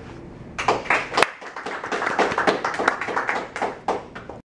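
A small group of people applauding by clapping their hands, starting about half a second in, with many quick, uneven claps.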